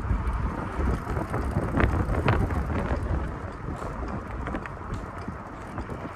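Wind buffeting the microphone and the rumble of a bicycle riding along a concrete path, with a few sharp knocks and rattles about two seconds in.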